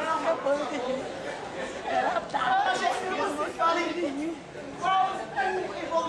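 Speech: several people talking, the words too unclear for the recogniser to catch.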